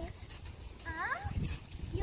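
A girl's wordless, high-pitched vocal sound rising in pitch about a second in, over low thuds of feet on the trampoline mat.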